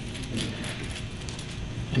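Faint small clicks from a TIG torch being handled over low room noise as its nozzle is unscrewed by hand.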